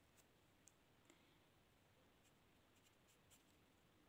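Near silence, with a few faint, short scratches and ticks from a pen on paper as numbers are written.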